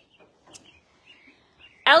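Quiet stable ambience with faint, high bird chirps and a single soft click about half a second in; a woman's voice starts near the end.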